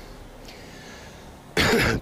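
A man's short, harsh cough near the end, after a quiet pause of about a second and a half.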